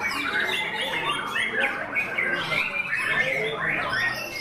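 White-rumped shamas singing: a dense, unbroken run of short overlapping whistled phrases, many notes sliding up or down in pitch.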